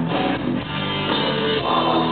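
Heavy metal band playing live through a stadium PA: distorted electric guitars and a drum kit, heard from within the crowd.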